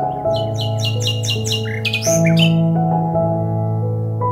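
Calm instrumental background music with sustained keyboard notes, over which a bird gives a quick series of about seven short high chirps, about four a second, in the first two seconds, then one longer, louder call.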